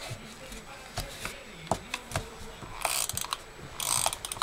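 Paper die-cut circles being handled and pressed together on a tabletop: scattered light taps and clicks, with a short papery rustle about three seconds in.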